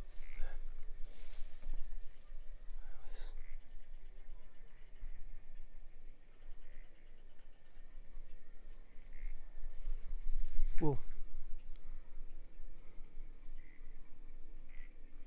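Steady high-pitched chorus of crickets at night. About eleven seconds in, a short, louder swooping sound slides through the pitch range.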